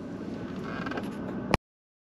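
Quiet, steady background noise inside a vehicle cabin, ending in a sharp click about one and a half seconds in, after which the sound cuts to dead silence.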